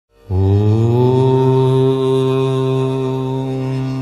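A single long chanted "Om" in a low voice, starting a moment in and held on one steady pitch, easing off slightly in the second half.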